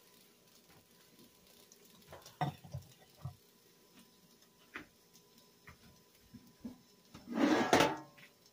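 Cookware being handled in a home kitchen: a few light knocks and clinks, then a louder rattling clatter of metal cookware near the end, as a sheet pan is fetched.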